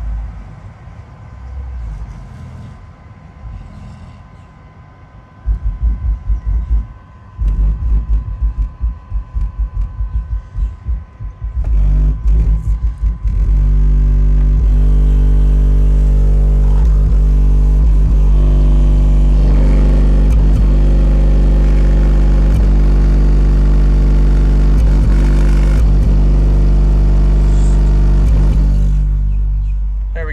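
Four 18-inch subwoofers driven by a Crescendo 6K amplifier play a 49 Hz bass tone. It comes first in short, stuttering pulses, then is held loud and steady from about 13 seconds in until it fades just before the end. The owner thinks the amp was running around clipping.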